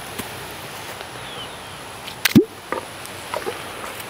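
American alligator snapping its jaws shut once, a sharp loud clap about two seconds in, followed by a few fainter clicks.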